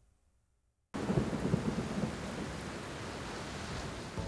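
After a near-silent first second, thunder and heavy rain start suddenly: a deep rumble of thunder for about half a second, then the rain goes on as a steady hiss.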